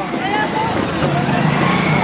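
Outdoor crowd noise: indistinct voices and general din, with a low steady hum underneath in the second half.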